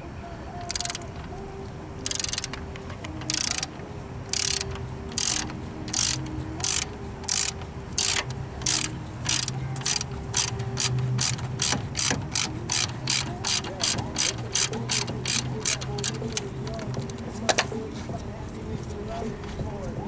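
Socket ratchet wrench clicking in short bursts on each return stroke as a 17 mm brake caliper mounting bolt is backed out. The strokes start slow, about one a second, and quicken to two or three a second before stopping near the end, with one last click after.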